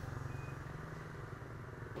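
Faint steady hum of a small engine running in the background, slowly fading.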